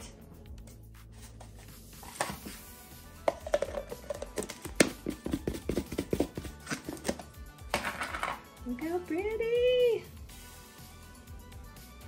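Coloured sugar sprinkles rattling inside a small lidded plastic tub as a cookie-dough ball is shaken in it to coat it, a rapid run of rattles lasting several seconds. A brief voice sound, its pitch rising then falling, follows near the end.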